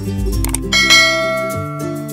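A bright bell chime strikes about two-thirds of a second in and rings on, over background music: the notification-bell sound effect of an animated subscribe button.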